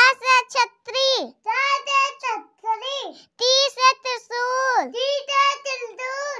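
A child's high voice reciting Hindi alphabet words in a sing-song chant, in short phrases that each end with a falling pitch.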